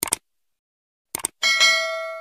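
Subscribe-button animation sound effect: short clicks at the start and again just after a second in, then a notification bell ding that rings and fades out.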